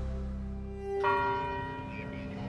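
Background music at a scene change: a low held tone fades, then a bell-like chime is struck about a second in and rings on.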